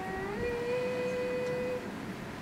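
A slow tune of long held notes: one note steps up to a higher one just under half a second in, holds steadily for over a second, then stops near the end.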